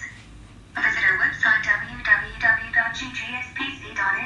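A voice speaking, resuming after a short pause of under a second.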